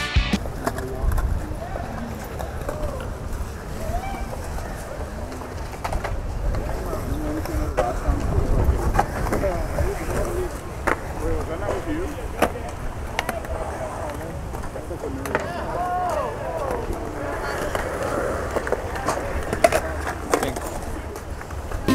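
Skateboard wheels rolling on a concrete skatepark bowl: a steady low rumble with scattered sharp clacks. Voices of bystanders chatter in the background.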